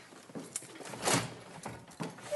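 A classroom window sash being pushed open in its frame: a few short scrapes and knocks, the loudest about a second in.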